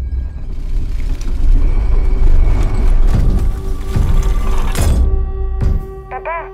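A deep, continuous earthquake rumble under dramatic trailer music, with several loud crashing impacts, the last and sharpest about five seconds in. It stops suddenly near the end.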